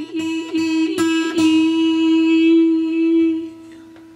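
A steel-string acoustic guitar string being tuned: it is plucked about four times in the first second and a half while the tuning peg is turned, its pitch creeping slightly upward. Then a single steady note rings on and fades away.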